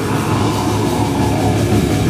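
Heavy metal band playing an instrumental passage: distorted electric guitar and bass over fast, dense drumming, with no vocals.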